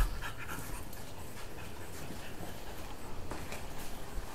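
A French bulldog panting steadily.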